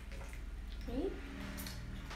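Hot water poured in a thin stream from a gooseneck kettle into a glass pitcher, heard faintly.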